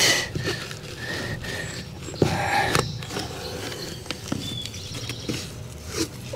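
PVC pipe-wrap tape being pulled from its roll and pressed around a corrugated plastic drain-pipe tee, with irregular scraping and rustling. There is a single knock about two seconds in.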